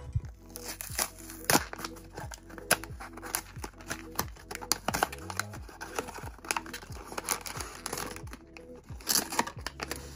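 Paperboard blind box being torn open, with irregular tearing and crinkling of card and packaging throughout. Soft background music plays underneath.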